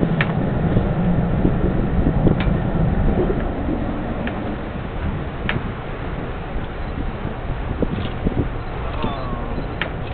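Steady low rumble of a boat's engine running, mixed with wind buffeting the microphone, with a few faint sharp clicks.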